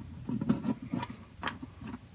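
A few small clicks and taps as an acoustic guitar's saddle is fitted back into its slot in the bridge, where it rests on an under-saddle piezo pickup.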